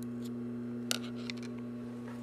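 A pair of scissors being handled at the sewing machine: one sharp click about a second in, followed by a couple of lighter clicks, over a steady low hum.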